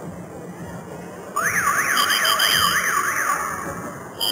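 A loud warbling siren-like tone, sweeping up and down about three times a second, with a steady shrill tone above it. It starts suddenly just over a second in and fades out near the end.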